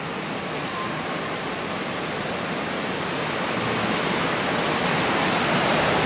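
Heavy storm rain with wind: a steady rushing hiss that grows gradually louder.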